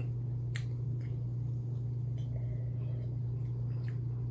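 A steady low hum with a faint high whine above it, and a single faint click about half a second in.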